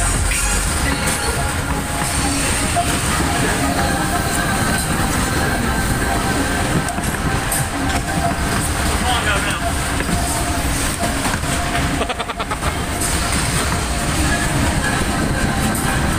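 Ride noise from a spinning Maxwell waltzer car at full speed: the steady rumble of the cars and platform rolling on their track, mixed with loud fairground music.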